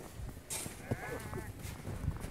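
A brief crunch of snow, then a short, high-pitched, wavering vocal sound from a child lasting about a second.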